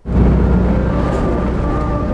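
Car driving along a road: a steady low rumble of engine and tyre noise that starts abruptly and holds level.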